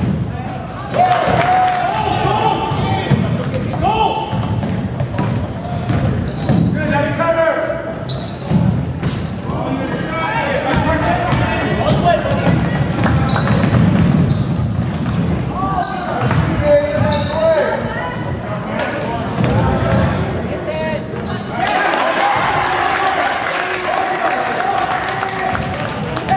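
Basketball game sounds on a gym's hardwood floor: the ball bouncing repeatedly, sneakers squeaking, and players and coaches calling out indistinctly.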